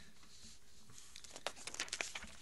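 Sheets of paper rustling and being shuffled near a table microphone, a quick run of crinkles starting about halfway through, over quiet room tone.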